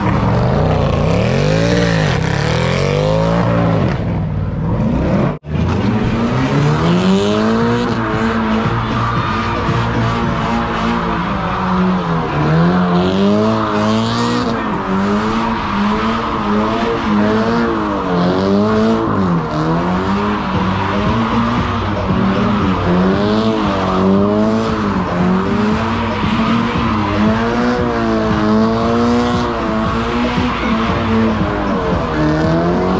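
A car doing donuts: the engine is held at high revs, its pitch rising and falling over and over as the throttle is worked, while the tires squeal and scrub continuously. The sound cuts out for a split second about five seconds in.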